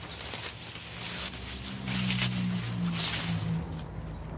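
A beetroot being pulled up by hand from loose soil: leaves and stems rustling with crackling as the root tears free, loudest in the middle. A low steady hum sounds underneath through the middle.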